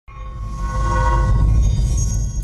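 Intro sound effect: a deep low rumbling drone with several steady, horn-like tones held above it. It starts abruptly and swells up over the first half second, then holds loud.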